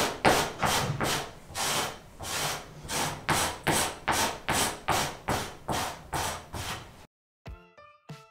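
A metal-bladed carpet pilling scraper dragged hard across a pile rug in quick repeated strokes, about two a second, each a rasping scrape, raking the pills out of the rug. The scraping stops abruptly near the end and piano music comes in.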